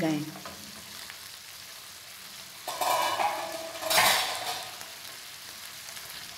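Spatula stirring and scraping minced beef as it fries in a pan, over a low sizzle: the added water has cooked off and the meat is frying in its oil. Two louder scrapes come about three and four seconds in.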